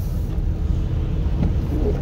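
Steady low rumble of a four-wheel-drive vehicle's engine and tyres on a snow-covered, slippery road, heard from inside the cab.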